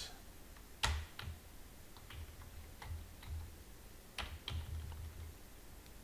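Computer keyboard keystrokes, a sparse and irregular run of key presses, the sharpest about a second in and another just past four seconds.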